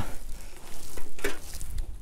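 Tangled trapping cables and traps rustling and clicking under a gloved hand digging through the pile, a crackly handling noise with a few light clicks around the middle.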